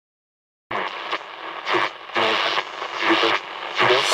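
Silence, then less than a second in, a thin, tinny radio-like sound with little bass that rises and falls unevenly, like a voice or music heard through a small radio speaker.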